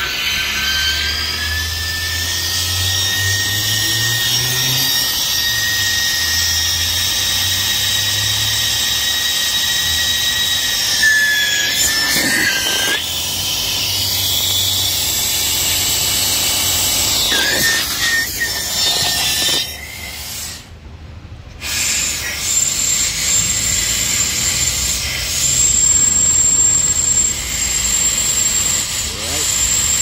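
Compressed air hissing loudly with a high whistle as it is blown through a Toyota hybrid's engine and hybrid-system coolant hoses to purge the remaining coolant. The air cuts off for a moment about two-thirds of the way through, then resumes.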